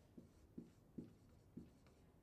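Marker writing on a whiteboard: a handful of faint short taps and strokes of the tip against the board as figures are written.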